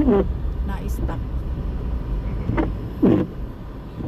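A car driving on a snow-covered road, heard from inside the cabin as a steady low engine and tyre noise that eases slightly near the end, with a few short vocal exclamations over it.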